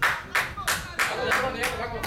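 Hands clapping steadily, about three claps a second, with voices talking between the claps.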